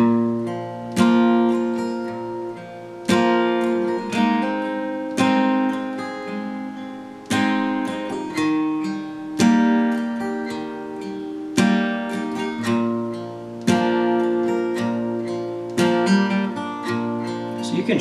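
Steel-string acoustic guitar, capoed at the third fret, strummed in a country verse pattern: a single bass note on the fourth string, then down, down, up strums. The chords ring out and decay between fresh attacks about once a second.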